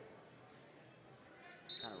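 Faint arena room tone, then near the end a short, high, steady whistle blast from the referee, stopping the wrestling bout, here for blood time.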